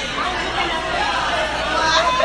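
Indistinct chatter of several young people talking over one another in a room, no single voice standing out.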